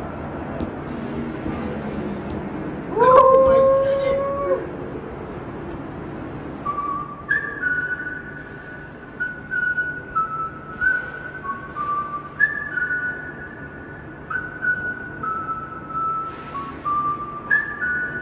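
A slow whistled melody of clean, held high notes stepping up and down, each about a second long, starting about seven seconds in. About three seconds in it is preceded by a single louder held note that slides up into pitch.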